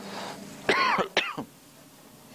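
A man clearing his throat with two short, throaty pushes about a second in, just after a breath.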